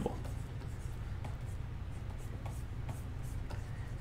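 Faint scratching of a pen stylus drawing sketch strokes on a Wacom graphics tablet, over a low steady hum.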